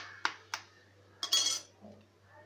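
A raw egg knocked against the rim of a steel tumbler, three sharp clinks about a quarter second apart. About a second and a quarter in comes a louder, rougher crack as the shell breaks.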